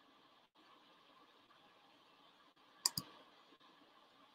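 Two sharp clicks in quick succession about three seconds in, over the faint steady hiss of a video-call audio line that briefly cuts out twice.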